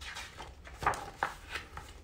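Pages of a hardcover picture book being handled and turned: a few short rustles and taps of paper.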